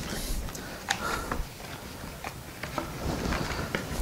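Light handling noises of unpacking a board game: a small plastic bag crinkling and scattered soft clicks and taps of pieces and cardboard being handled.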